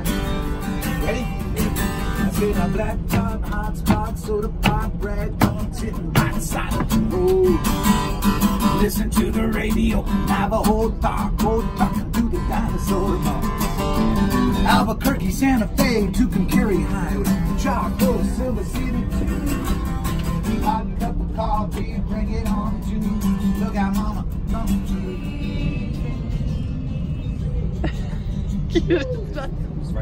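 Acoustic guitar strummed live with a man singing along, over the steady low rumble of a moving train carriage.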